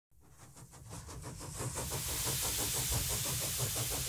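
Steam engine running, its exhaust beating quickly and evenly at about seven beats a second, with a steam hiss. It fades in over the first couple of seconds, and the hiss grows stronger partway through.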